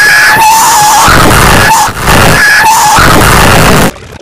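Very loud, heavily distorted screaming, boosted until it clips, with shrill wavering pitch. It breaks off briefly about two seconds in and stops abruptly near the end.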